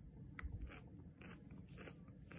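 Faint crunching of a person biting into and chewing a fresh Grenada Seasoning pepper pod: one sharp bite under half a second in, then several softer chewing crunches.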